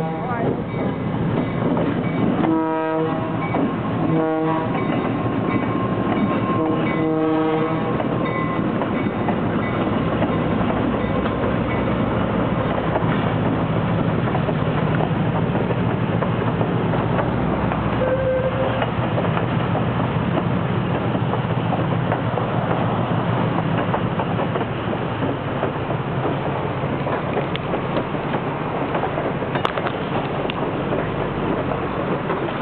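Diesel locomotives passing close, with their engines running as a steady low drone and wheels clacking on the rails. A multi-note air horn, the Leslie Tyfon A-200 on the lead unit, gives three short blasts about two and a half, four and seven seconds in, the last a little longer.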